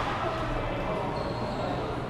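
Chatter of many voices echoing around a large indoor badminton hall, with no sharp shuttlecock strike, between two hits of the rally; a faint thin high squeak sounds in the second half.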